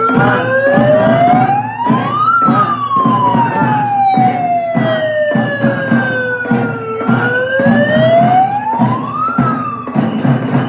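A siren wailing slowly up and down. It rises over about two seconds and falls away over about four and a half, then rises again near the end. Steady drumbeats, about two a second, run underneath.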